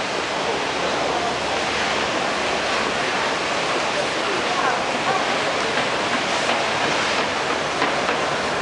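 Busy city street ambience: a steady wash of noise with indistinct voices of passers-by.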